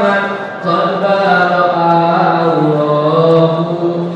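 A man chanting solo, a melodic line of long held notes that slide between pitches, with a short pause for breath about half a second in.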